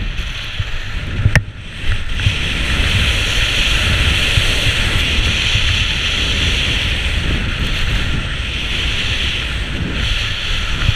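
Wind buffeting a GoPro's microphone during a fast ski descent, with the hiss of skis sliding on snow growing stronger from about two seconds in. A single sharp click comes about a second and a half in.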